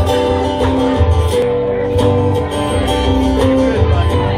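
Acoustic guitar strummed live with a bass line underneath: the instrumental opening of a song, with no singing yet.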